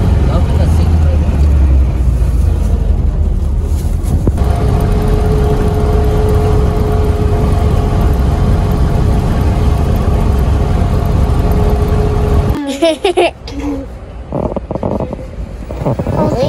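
Engine and road rumble inside a moving car, with a steady hum joining about four seconds in. The noise cuts off sharply about three-quarters of the way through.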